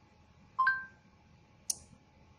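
Short two-note electronic beep from the phone's Google voice input, the tone that signals the spoken command has been captured, followed about a second later by a single sharp click.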